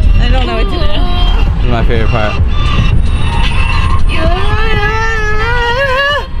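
A man singing or vocalizing in long, wavering drawn-out notes inside a moving car's cabin, over a steady low rumble of engine and road noise.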